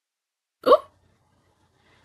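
A person's voice: one short vocal burst with a gliding pitch, a little over half a second in.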